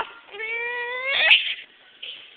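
A young child's drawn-out squeal, slowly rising in pitch for about a second, ending in a short, louder shriek.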